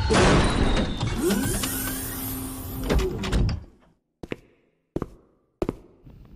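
Action sound effects: a loud, dense rushing sound with sliding tones that cuts off about three and a half seconds in, then three sharp knocks spaced a little over half a second apart.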